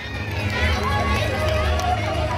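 A woman's voice speaking softly through a public-address loudspeaker, over a steady low electrical hum.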